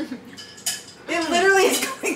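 A woman laughing with a drawn-out, pitch-bending voice in the second half, after a short, light clink about two-thirds of a second in.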